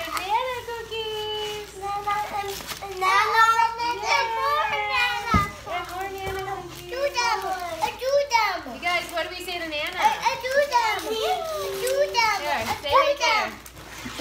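Young children's excited voices: overlapping high-pitched calls, squeals and drawn-out shouts with no clear words, with a brief thump about five seconds in.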